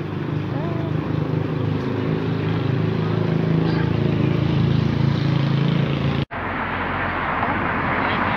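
A low, steady engine drone with several tones, growing louder over about six seconds, then cut off abruptly and replaced by a steady hiss.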